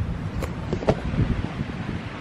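Rustling and handling noise as a person climbs into and settles in a fabric hammock, with two sharp clicks about half a second and one second in.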